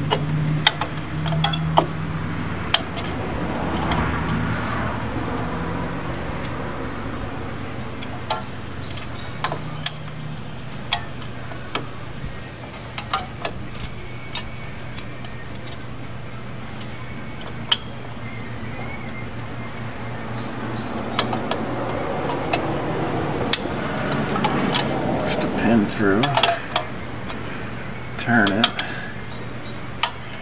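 Scattered sharp metallic clicks and clinks as a drum brake shoe's hold-down spring and retaining washer are pressed onto their pin with a hold-down spring tool. A steady low hum runs underneath.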